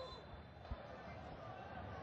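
Faint stadium crowd noise under a TV football broadcast, with one soft low thud a little before halfway.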